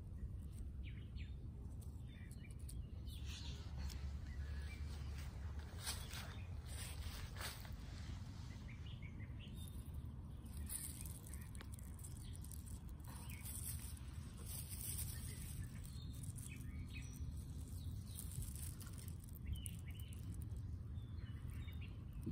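Outdoor ambience: a steady low rumble with faint, scattered bird chirps and small rustles throughout.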